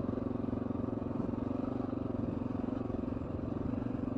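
Honda XR650L's single-cylinder four-stroke engine running at a steady speed while riding, with a fast, even pulse to its note.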